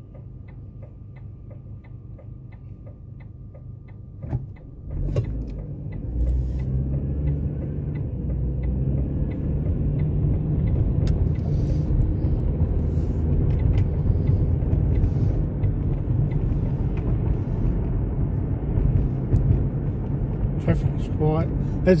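A car's turn indicator ticks about twice a second while the car waits at a red light, and stops after about four seconds. The car then pulls away, and engine, tyre and wind noise build up and hold steady, loud in the cabin with a window left down.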